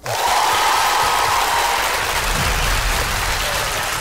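Audience applause that starts suddenly and holds at a steady level, with a faint held tone over its first couple of seconds.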